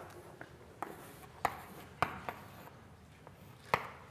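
Chalk on a blackboard while figures are written: about five sharp taps spread over the few seconds, with the clearest about a second and a half in and another near the end.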